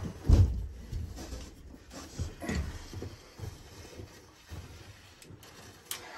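Handling noise from a grease gun and mower-deck spindle: a dull thump just after the start, then a few lighter knocks and rustles that fade away as the gun is taken off the spindle's grease fitting.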